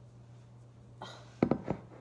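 Metal corkscrew clicking and knocking against a glass wine bottle's neck as it is worked into the cork: a short scrape about a second in, then two sharp clicks close together.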